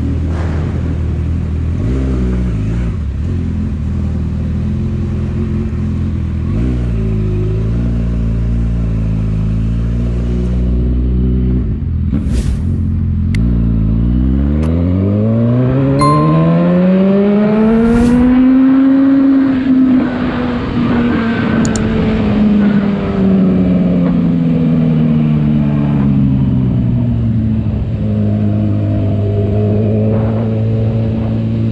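Honda CB1000R inline-four engine running at low revs, then accelerating hard a little before halfway with one long rise in pitch. It then falls off slowly as the bike eases off, and settles to a steady note near the end.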